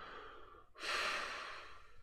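A man's breath close to the microphone: a faint intake, then about a second in a longer exhale that starts suddenly and trails off.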